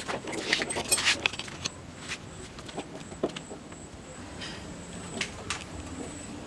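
Metal clinking and rattling as a Shimano SLX M7100 rear derailleur is handled and bolted onto the bike's derailleur hanger with a hex key. The sound is busiest in the first second and a half, then only a few scattered clicks follow.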